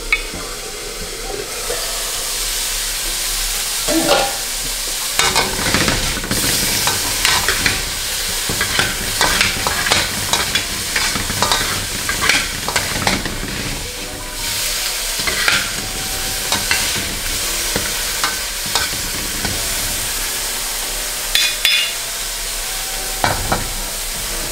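Chicken sizzling in a hot wok, stirred and tossed with a metal wok spatula and ladle. The utensils scrape and clink against the pan over a steady frying hiss that grows fuller a second or two in.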